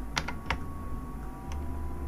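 A few sharp clicks of computer keyboard keys: three in quick succession near the start and one more about a second and a half in, over a faint steady hum.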